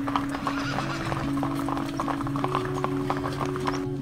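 Many overlapping hoofbeats of a herd of Dartmoor ponies trotting on a tarmac lane, a dense irregular clatter that cuts off suddenly near the end. Background music plays underneath.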